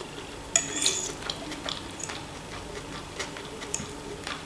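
Metal fork clinking and scraping against a ceramic plate while food is picked up, with the sharpest clicks about half a second in and lighter taps after.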